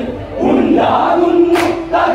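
A group of men shouting together in chorus, then a sustained sung note taken up about halfway through. A single sharp clap lands near the end.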